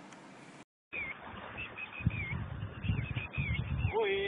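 After a brief dropout, small birds chirp in short wavering calls over uneven low rumbling and thumps, like wind or handling on the microphone.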